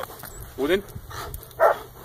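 A German Shepherd giving two short, sharp barks while lunging at a decoy in a padded bite suit during protection bite work.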